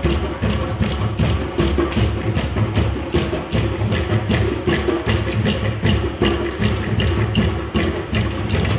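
A group of djembes and other African hand drums played together in a fast, steady rhythm of several strokes a second.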